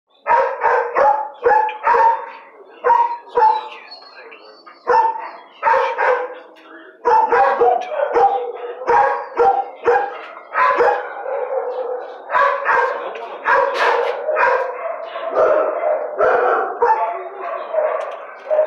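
Dogs in a shelter kennel block barking, short sharp barks repeated over and over. From about ten seconds in the barking grows denser and overlaps, as more dogs join in.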